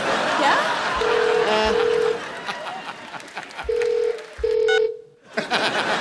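Telephone ringback tone through a mobile phone's speaker: a low steady beep twice in quick succession, a pause, then twice again. It is the ring of a call that has not yet been answered.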